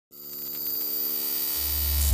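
Synthesized buzzing drone of a logo intro, swelling up from silence with many steady overtones, joined by a deep bass about one and a half seconds in.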